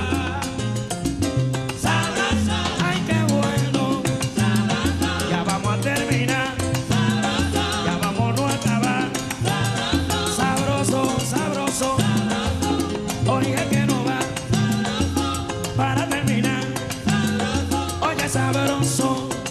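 Salsa music: a son montuno band playing an instrumental stretch between sung verses, with a stepping bass line under dense, steady percussion.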